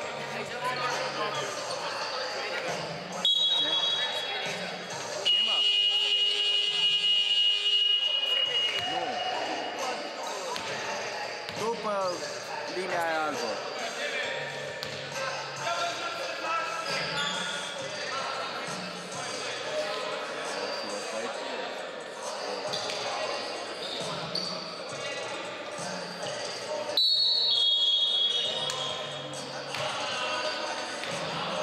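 Sports hall ambience: voices echoing and a basketball bouncing on the wooden floor. Loud, steady high-pitched signal tones sound about three seconds in, again from about five to eight seconds, and near the end as play resumes.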